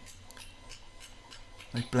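Light hammer blows on a ½-inch square steel bar lying on the anvil, a string of faint taps. The bar is being worked at a black heat to smooth out the hammer marks.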